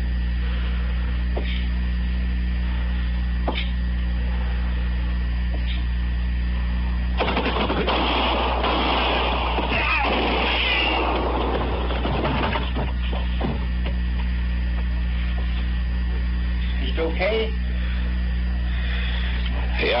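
Radio-drama sound effects over a steady recording hum: a few slow, evenly spaced footsteps, then about seven seconds in a dense burst of gunfire that lasts several seconds.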